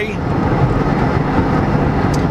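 Steady road and engine noise inside a moving car's cabin: an even rumble of tyres and engine while driving.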